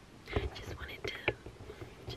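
Only a woman's whispered speech, close to the microphone.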